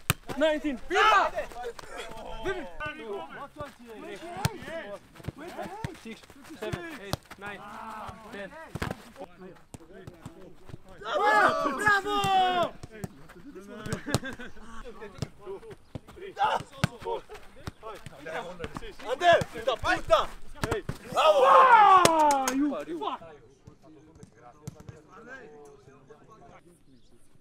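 Footballs being kicked and volleyed, a scattered run of sharp thuds of boot on ball. Players shout over them, in two loud stretches of calling.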